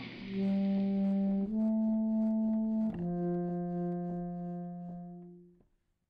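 Short musical interlude: three long held chords, each changing about every second and a half, the last one fading out shortly before the end.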